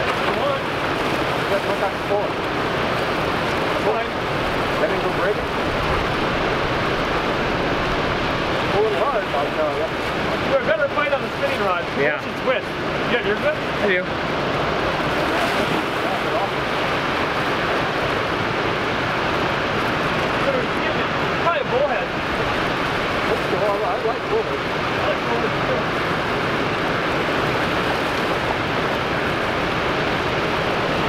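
Steady rush of whitewater churning below a dam spillway, with a few faint voices mixed in.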